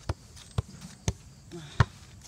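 A football being juggled off a sneaker: four short, dull taps of shoe against ball about half a second apart, the last one the loudest.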